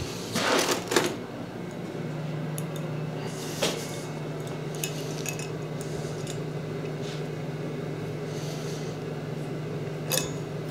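Hand work on a steel plate assembly: a brief shuffle at the start, a single sharp metallic click about three and a half seconds in, and faint small clinks. A steady low hum comes in about two seconds in.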